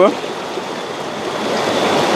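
River water rushing steadily over rocks.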